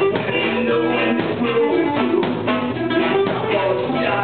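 Live ska band playing: trombone, keyboard, electric guitar and drum kit together at a steady, loud level.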